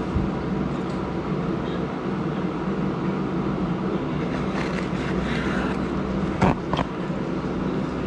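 A steady low droning hum, with two short sharp knocks about six and a half seconds in, the second following the first closely.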